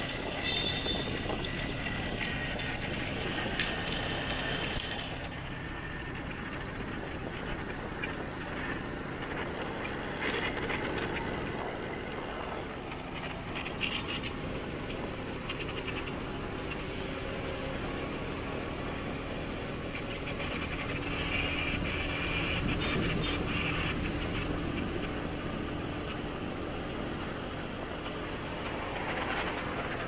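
Steady road and traffic noise from a moving motorbike: its engine and tyres on the road, with other motorbikes and cars passing.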